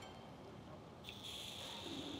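A drink through the straw spout of a large insulated water bottle: a hissing suck of about a second, starting about a second in, over faint room noise.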